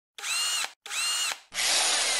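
Two short whirs of a power tool motor, each about half a second long, their pitch swinging up as they start and down as they stop. About a second and a half in, a loud hissing rush begins and fades away slowly.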